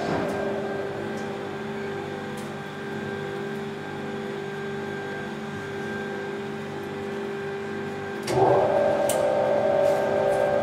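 Industrial laundry machines running with a steady hum made of several steady tones. About eight seconds in, a louder machine sound comes in and stays.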